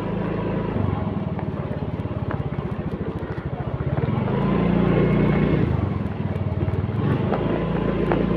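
Small motor scooter engine running under way, with a quick, even pulsing beat; it swells louder for a moment about halfway through, then settles back.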